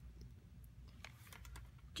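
Near silence with a few faint, light clicks in the second half, from a mini hot glue gun and a plastic pacifier being handled.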